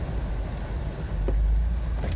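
Steady low rumble of a Jeep Wrangler driving down a road, engine and tyre noise heard from inside the cab.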